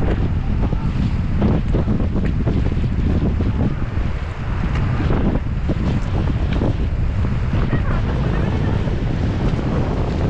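Heavy wind rumble on the camera microphone over rushing river water, with irregular splashes of paddles dipping alongside an inflatable raft.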